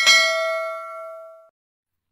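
A single bell-like metallic ding, the closing hit of a logo intro jingle: struck once, its several ringing tones fade for about a second and a half and then cut off abruptly.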